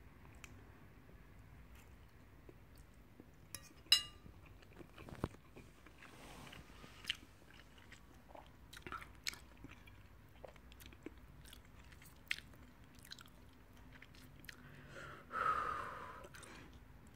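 A person chewing a mouthful of spicy stir-fried instant noodles: faint, soft mouth sounds with scattered small clicks. There is one sharper click about four seconds in.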